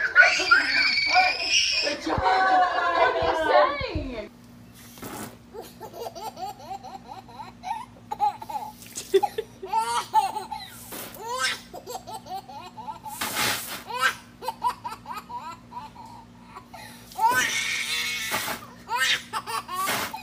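A young girl's loud, high-pitched excited shrieking for the first few seconds, then after a cut a toddler's giggles and babbling over a steady low hum, with a brief noisy burst a bit past the middle and a louder stretch of laughter near the end.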